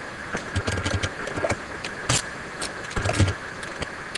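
Computer keyboard being typed on: irregular key clicks as a command is edited and entered, with a couple of heavier, lower key strikes, the loudest about three seconds in.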